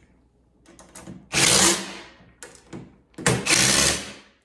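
DeWalt cordless impact wrench running a bolt into the stand's metal frame in two short runs: one about a second in, and a longer one near the end.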